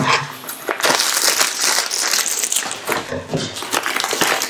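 Plastic packet of dried fish crackers crinkling as it is handled, a continuous run of small crackles.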